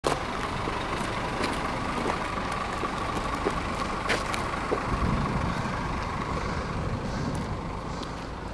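A large coach bus idling: a steady engine rumble with a thin steady whine over it, and a few sharp clicks scattered through.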